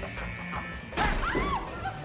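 A sudden loud crash about a second in, followed by several short, sharp shouted cries, over tense film score.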